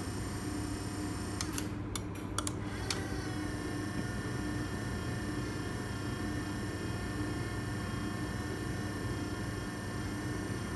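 A Nice Robus sliding-gate gear motor runs with a steady electric hum during its position-search run in the closing direction. A few sharp clicks come about one and a half to three seconds in, and then a higher whine joins the hum.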